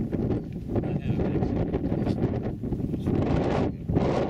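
Wind buffeting the camera microphone: a loud, low rumble that rises and falls in gusts.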